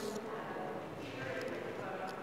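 Footsteps climbing stone stairs, with people talking in the background.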